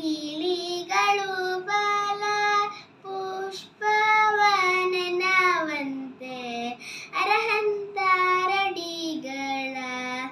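A young girl singing a Kannada Jain devotional song (bhajan) unaccompanied, holding long notes that bend and glide between short breaths.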